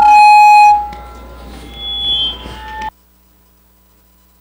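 A loud electronic buzzer tone, steady in pitch, sounds for under a second, then carries on faintly with low room sound until everything cuts off abruptly about three seconds in.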